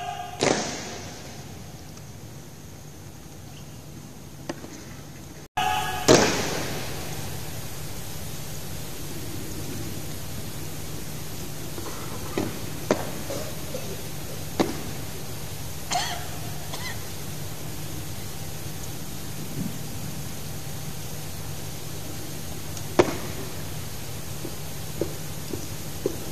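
Steady low background hum with scattered sharp knocks and clicks. A loud knock comes about half a second in and another about six seconds in, then several smaller ones.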